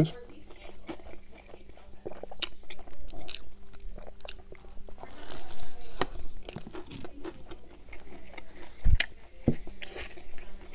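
Close-miked biting and chewing of a burger topped with crispy battered onion rings: crunchy crackling bites and wet mouth sounds. A low thump comes near the end.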